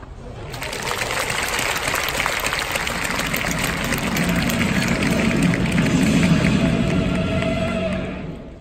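A scattered baseball crowd applauding a strikeout, with many hands clapping from about half a second in, and stadium music playing underneath in the second half.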